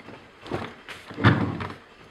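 A few dull thumps and knocks, the loudest about a second and a quarter in.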